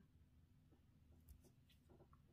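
Near silence, with a few faint light clicks of glass beads and a needle being handled while threading a beaded pendant.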